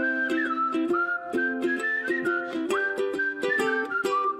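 Upbeat theme music: a whistled melody that slides between notes, over a steadily strummed small plucked-string instrument.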